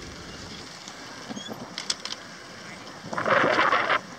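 Steady outdoor noise from the moving, handheld microphone, with a few light clicks about halfway through and a louder stretch of hiss for the last second that cuts off suddenly.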